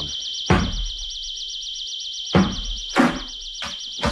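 An eerie, high electronic warbling tone, wavering rapidly about ten times a second, runs as a radio-drama sound effect. Over it fall a few sudden heavy thuds, one about half a second in and three more close together near the end.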